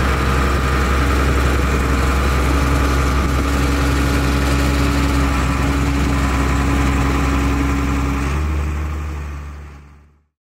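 Versatile 2210 tractor engine running steadily, a low hum with a few steady tones, as it tows a loaded-wheel liquid manure tanker; the sound fades out near the end.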